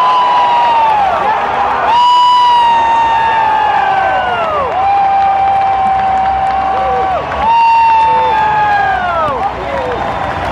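Large football stadium crowd cheering, with fans close by holding long, high shouts, about four of them, each held steady and then trailing down in pitch.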